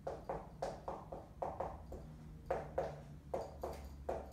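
Dry-erase marker writing on a whiteboard: a run of short strokes and taps, a few per second, with a pause of about half a second just after the middle. A low steady hum runs underneath.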